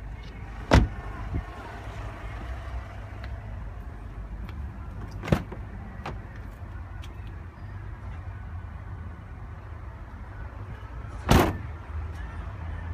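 Three sharp knocks over a low, steady rumble as someone climbs out through the rear door of a 2008 Toyota RAV4: one about a second in, one about five seconds in, and a longer thump near the end, as of the car door being shut.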